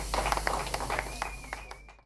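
Audience clapping, scattered handclaps with a thin high whistle in the second half, fading out to near silence.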